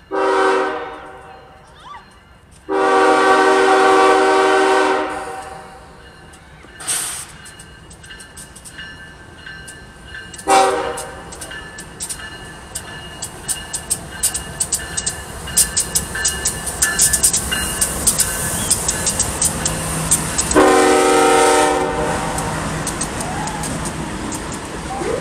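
BNSF 7536, a GE ES44DC diesel locomotive, sounding its multi-chime air horn for a grade crossing in a long, long, short, long pattern. Between the last two blasts the passing train's wheels clatter rapidly over the rail joints and crossing, over a steady rumble.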